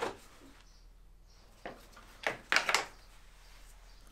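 A few short clicks and knocks from hand tools working a 7 mm socket on the turbo pipe jubilee clips: one click at the start, then a quick cluster of clicks a little over two seconds in.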